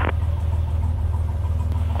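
Cessna 182T's six-cylinder Lycoming engine idling: a steady, even low drone.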